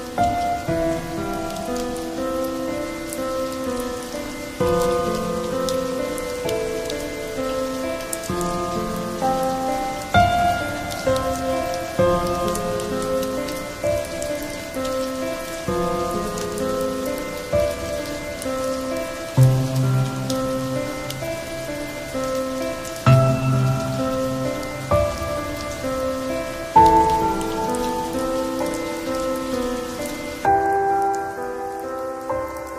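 Slow, soft instrumental music, a new note or chord every second or two with occasional deep bass notes, over a steady sound of falling rain.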